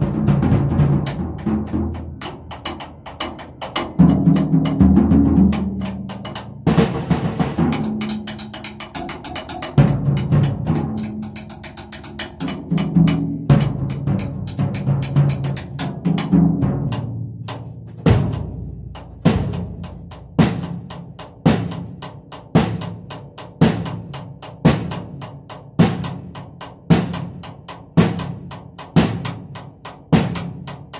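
An acoustic drum kit being played with sticks: busy playing with ringing toms for the first half, then a steady groove from about halfway, with a strong accented hit about three times every two seconds and lighter cymbal strokes between.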